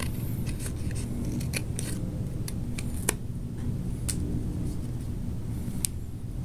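Scissors snipping through shoebox cardboard in short, irregular cuts, with one sharper snip about halfway through. A steady low hum runs underneath.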